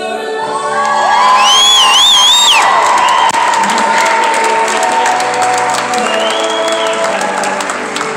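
Audience cheering over a song with singing, with a loud, high, wavering whoop about a second in and a shorter one later, and scattered clapping after the first whoop.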